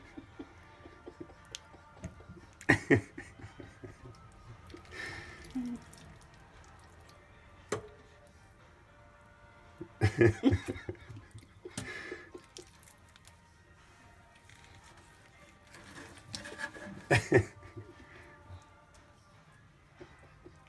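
Faint background music, broken by a few short bursts of wet handling noise as fish are gutted by hand in a stainless-steel sink, with one sharp click about eight seconds in.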